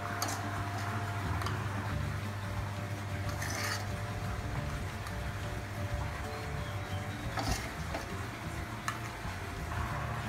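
Metal ladle scraping and clinking against a steel wok as fried rice is scooped out into a bowl, a few short clinks standing out, over a steady low hum.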